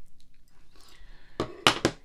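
Handling noise of a card holder on a desk: three or four quick, sharp clicks and knocks about one and a half seconds in.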